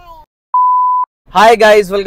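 A single steady electronic beep lasting about half a second, laid in at a cut, with dead silence either side of it; a man starts speaking near the end.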